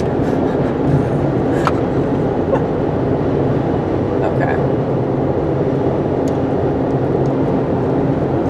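Steady road and engine drone inside a car cabin at highway speed, with a single sharp click about a second and a half in.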